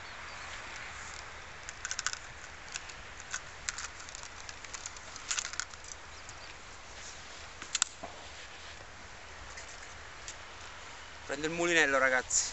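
Scattered light clicks and taps as the sections of a carbon surfcasting rod are drawn out and seated, over a steady background hiss.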